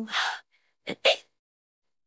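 A person with hiccups: a breathy gasp that fades out, then a short, sharp hiccup about a second in.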